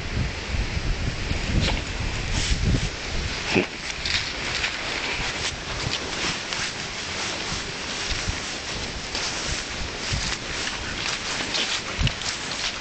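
A Staffordshire bull terrier sniffing and snuffling with her nose to the ground, over a run of short rustles.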